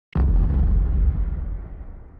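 A deep cinematic boom sound effect for a logo intro: a sudden hit that fades away over about two seconds.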